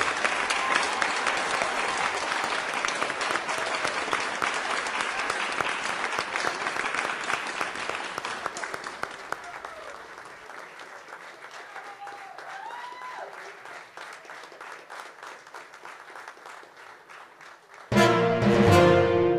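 Audience applauding in a large hall. The clapping is full for the first several seconds, then thins and fades to scattered claps after about ten seconds.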